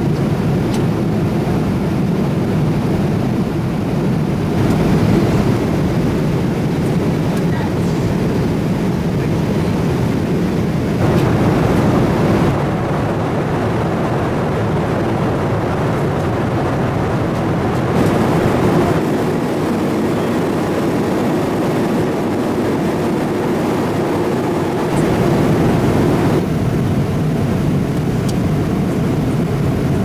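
Steady cabin noise of a Boeing 777-300 in cruise, heard from an economy seat: a low rushing roar of airflow and engines. Its tone changes abruptly several times.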